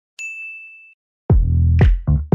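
A single high, bell-like ding that rings out and dies away in under a second. After a short silence, electronic dance music with a heavy bass beat starts about a second and a half in.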